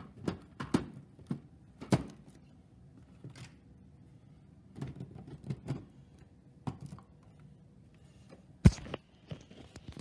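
Light scattered clicks and knocks, with one sharp knock near the end.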